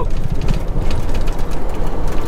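Inside a semi-truck cab on the move: a steady low rumble of the diesel engine and road noise, with faint light rattles.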